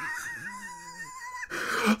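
A man's high-pitched, strained laugh: a held, wavering squeal that ends in a breathy burst near the end.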